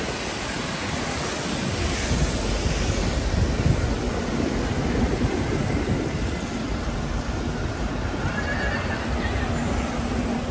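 City street traffic: double-decker buses and cars running and passing on a wet road, a steady low rumble of engines and tyre noise.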